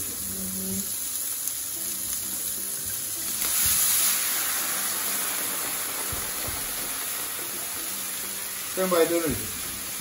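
Shallots and diced bacon sizzling in a frying pan as white wine is poured in to deglaze it. The sizzle swells for about a second a few seconds in, then settles into a steady bubbling.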